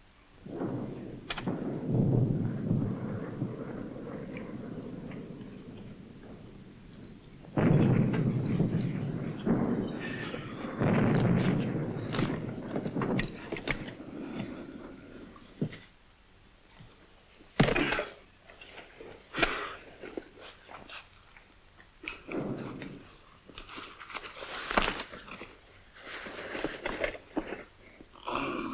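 Artillery explosions heard from inside a dugout: two long, low rumbling blasts in the first half, then a series of shorter, sharper bangs.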